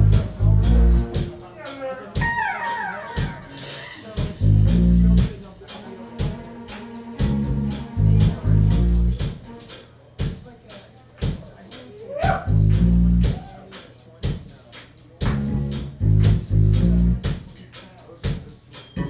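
Live Motown-style soul band playing: electric guitar over a steady drum-kit beat and a low bass riff that repeats about every four seconds, with sliding notes about two seconds in and again about twelve seconds in.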